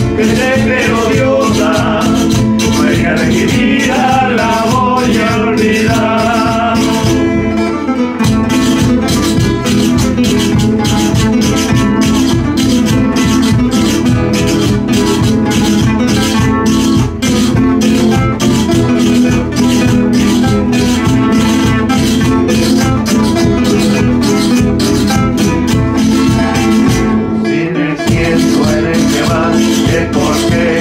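Live folk music: classical guitars strummed in a steady, driving rhythm with a large bass drum beaten with a mallet and a rattling percussive beat. A man sings over it during the first seven seconds or so and again near the end, with an instrumental stretch in between.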